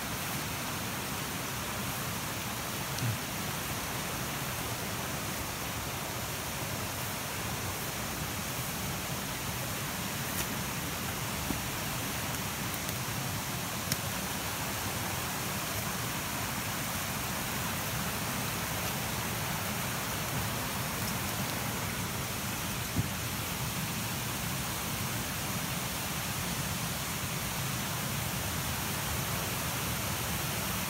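Waterfall and fast-moving creek water making a steady, even rush, with a few brief knocks scattered through it.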